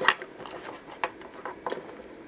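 A few light clicks and knocks from handling a small handheld tinySA spectrum analyzer and its cable while it is set in place, the loudest just after the start.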